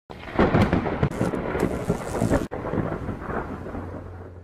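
Loud rumbling, crackling noise with sharp cracks in it, cut off suddenly halfway through, then a quieter rumble dying away. A low held music note comes in near the end.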